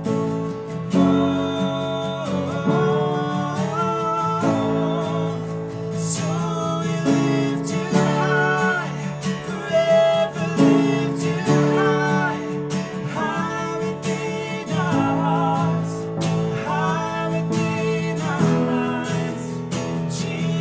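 A man and a woman singing together, accompanied by an upright piano and an acoustic guitar.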